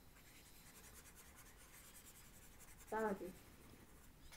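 Faint scratching of handwriting, with a short murmur from a voice about three seconds in.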